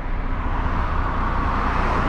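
Engine and road noise heard inside the cab of a moving HGV: a steady low rumble with a rushing noise that swells near the end.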